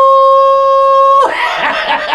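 A man's voice holding one long, steady, high sung note, which breaks off a little over a second in and turns into loud laughter in quick pulses.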